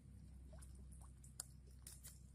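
Faint, sparse wet clicks and squelches of hands and a knife working inside a freshly gutted weasel carcass, over a low steady hum.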